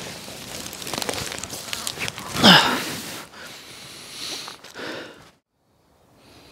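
Dry leaves and brush rustling and crackling as a person shifts about in forest leaf litter, with a louder burst about halfway through. The sound cuts off abruptly near the end.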